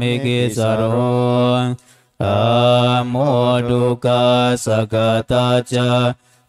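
Buddhist monks' chanting of Pali verses in low male voices, held on a nearly level reciting pitch. There is a brief breath pause about two seconds in, and the syllables come shorter and more clipped near the end.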